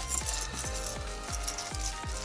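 Background music: sustained synth tones over a steady beat.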